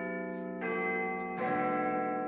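Sustained bell-like musical chords, with new notes entering about half a second in and again about a second and a half in.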